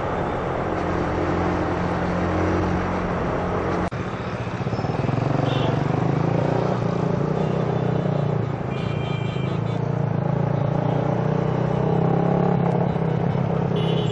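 Motorcycle engine running steadily while riding in city traffic, with road and wind noise. The engine note breaks briefly and shifts about four seconds in, and a few faint high beeps come through later.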